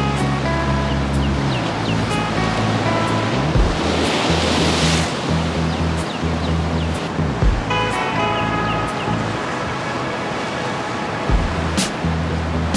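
Background music with a steady beat, laid over the rushing of big ocean waves breaking on rocks. One wave surges loudest about four seconds in.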